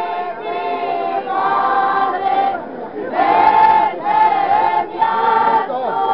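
A group of voices singing a folk song unaccompanied, in phrases of long held notes with short breaks for breath between them.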